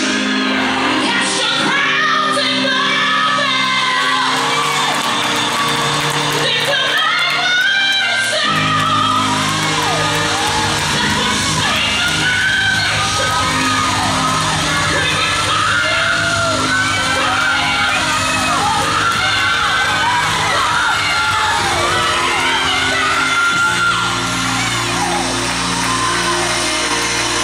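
Gospel song with singing over its accompaniment. The bass comes in fuller about eight and a half seconds in.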